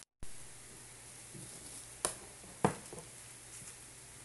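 Scissors being handled over cloth: a light rustle, then two sharp clicks a little over half a second apart, the second louder, over a steady faint hiss. The sound drops out for a moment at the very start.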